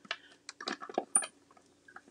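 Plastic cutting plates clicking and knocking against a small hand-cranked die-cutting machine as the plate sandwich is pushed into its rollers: a quick run of short, sharp clicks, the loudest about a second in.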